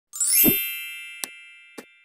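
Logo-intro sound effect: a bright chime that sweeps quickly upward and lands on a low thud about half a second in, then rings down slowly. Two short clicks follow near the end.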